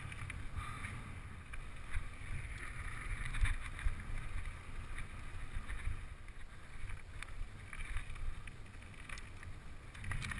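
Mountain bike riding over rough rock and dirt, heard from a camera mounted on the bike: a steady low rumble of wind on the microphone and tyres on the ground, with scattered rattles and clicks from the bike over bumps.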